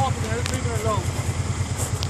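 Quad ATV engine idling, a steady low pulsing beat.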